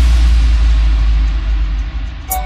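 Intro bass drop of a Nagpuri DJ remix: a deep sub-bass boom held steady under a wash of hiss that slowly dies away.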